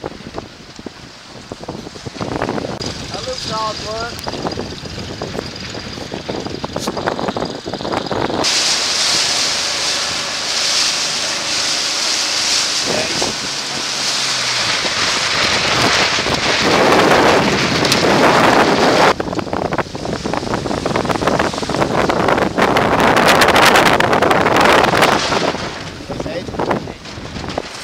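Strong wind buffeting the microphone over choppy open water, a loud, rough rushing that changes abruptly at edits about eight and nineteen seconds in. For a few seconds in the middle a steady motor hum runs under the wind.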